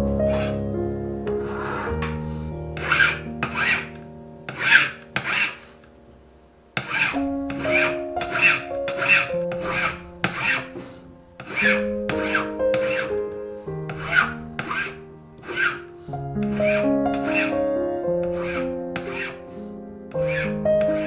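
Hand file rasping on a small metal ring blank in short, regular strokes, about one or two a second, with a pause of about a second around six seconds in. Background music with sustained notes plays underneath.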